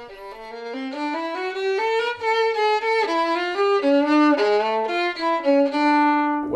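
Solo violin played with the bow: a slow melody of held single notes moving up and down by step, swelling in loudness over the first couple of seconds.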